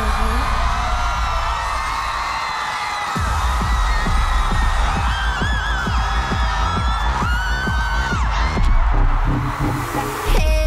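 Electronic pop dance music with heavy bass over a crowd screaming and cheering. The bass cuts out about three seconds in, then comes back with a steady beat.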